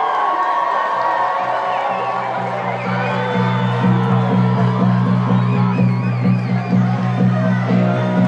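Stadium public-address music with a heavy, pulsing bass line that comes in about a second in, over a crowd cheering and whooping as the home team returns to the field.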